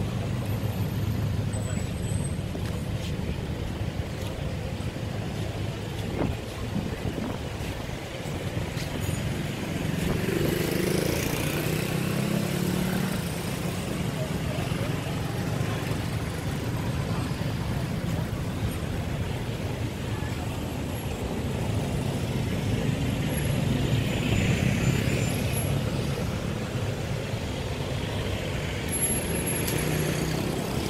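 Steady street traffic from cars passing on a busy road, swelling louder about ten seconds in and again later, with voices of people around.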